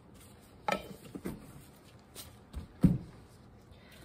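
Handling noise of printmaking tools on a work table: a few light knocks about a second in, and one heavier, low thump about three seconds in as a palette knife and an ink tin are set down and moved.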